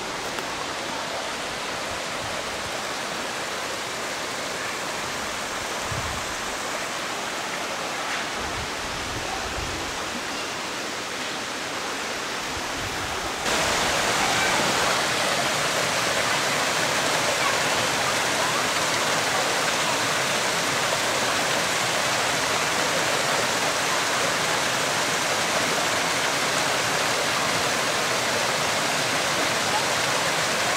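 Mountain creek running over rocks and boulders: a steady rush of water that gets abruptly louder about halfway through.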